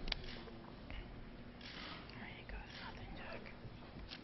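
Quiet, low voices murmuring, with a sharp click right at the start.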